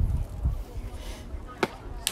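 A single sharp pop about a second and a half in, as a pitched baseball smacks into the catcher's mitt, over low wind rumble on the microphone.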